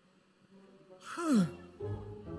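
A person's breathy sigh, falling steeply in pitch, about a second in.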